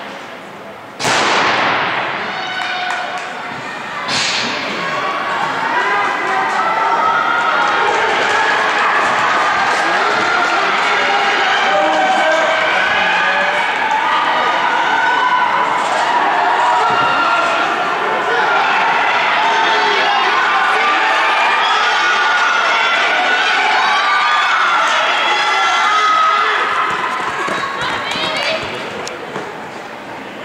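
A starter's pistol fires about a second in, its crack echoing through the indoor fieldhouse, and a fainter sharp crack follows about three seconds later. Spectators then cheer and shout the sprinters on, dying down near the end.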